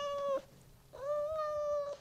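Cat meowing twice: a short meow ending just after the start, then a longer, level meow of about a second.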